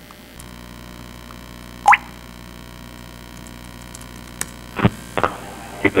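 Steady electrical mains hum from a laptop's audio feed into the hall's sound system, growing stronger about half a second in. About two seconds in comes a short rising chirp, and a few sharp clicks follow near the end.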